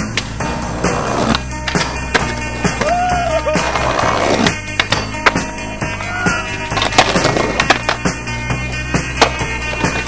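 Skateboard wheels rolling on asphalt, with several sharp board impacts from pops and landings, the loudest about seven seconds in. Rock music with guitar plays underneath.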